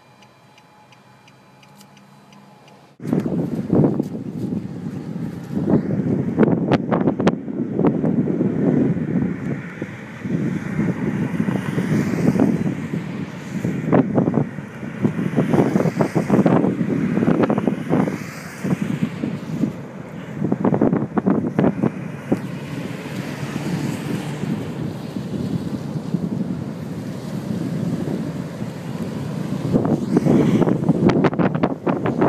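Strong, gusting storm wind buffeting the camera microphone, surging and easing in waves with a few sharp knocks. It cuts in abruptly about three seconds in, after faint, regular ticking.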